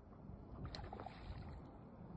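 Faint low rumble of wind buffeting the microphone, with a few soft ticks a little before the middle.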